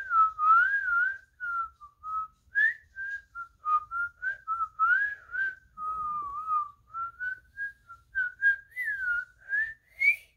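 A boy whistling a Christmas song melody through pursed lips. A single clear tone steps and slides up and down in short phrases, with small breathy gaps between the notes.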